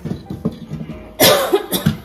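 Coughing: one loud cough a little past a second in, followed quickly by two shorter ones.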